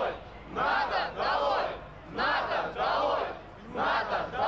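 A crowd of protesters chanting a short slogan in unison, shouted in pairs of loud beats that repeat about every second and a half.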